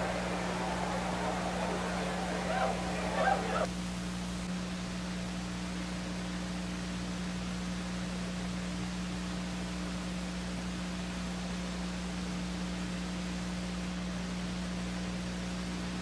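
Steady low electrical hum with hiss, as from an old broadcast or tape recording. For about the first four seconds a noisy background murmur sits over it and then cuts off suddenly.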